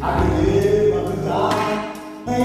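Karaoke singing: a solo voice holding sung notes over a recorded pop-ballad backing track, the sound dipping quieter near the end.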